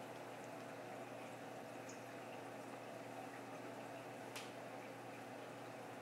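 Faint steady sound of a reef aquarium system running: water moving through the tank and its filtration, with a low steady pump hum. A light click about four seconds in.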